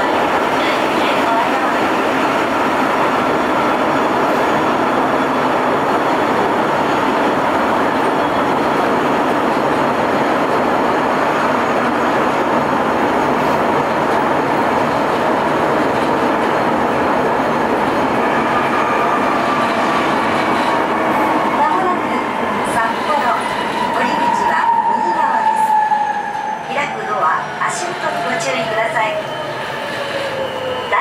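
Sapporo Namboku Line 5000-series rubber-tyred subway train heard from inside the car, running with a loud, steady noise. From about two-thirds of the way through, its motor whine falls in pitch as the train slows for the next station. A few clicks come near the end.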